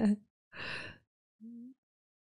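A woman's voice trailing off from laughter, then a short breathy exhale about half a second in and a brief, faint hum a second later.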